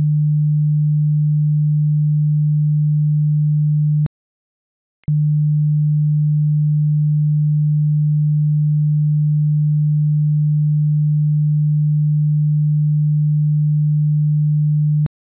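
A steady 150 Hz sine test tone, a single low pure hum. About four seconds in it drops out for about a second, with a click as it stops and again as it resumes.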